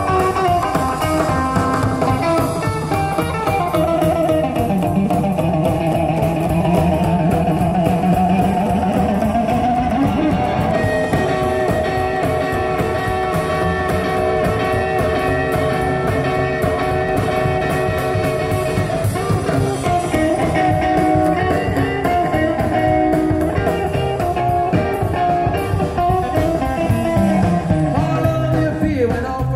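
Live rock and roll band playing an instrumental break: an electric guitar leads, with gliding, wavering notes from about 4 to 10 seconds in, over upright double bass and drums.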